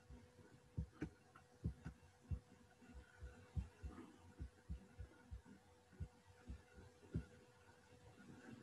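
Faint low thuds, unevenly spaced at two or three a second, over a faint steady hum.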